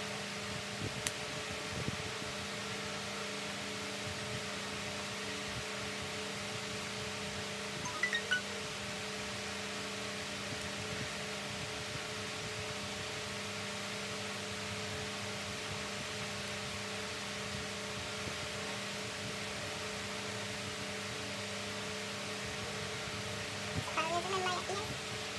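Electric fan running: a steady whir with a low hum. A couple of faint, brief sounds stand out, one about a second in and a short chirp-like one about eight seconds in.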